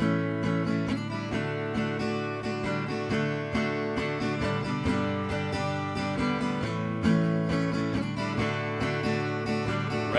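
Acoustic guitar strummed alone in a steady country rhythm, the instrumental intro to the song before the vocals come in.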